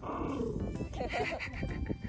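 A small dog growling in warning at another dog that has come close to it while it plays with its toy, over background music.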